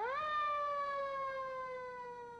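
Fire engine siren wailing: its pitch sweeps up sharply just after the start, then slowly falls away as the sound eases off.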